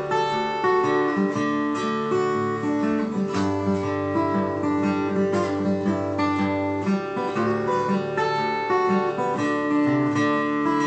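Acoustic guitar playing an instrumental song intro: picked notes in a steady rhythm over held chords, with a low bass note ringing for a few seconds in the middle.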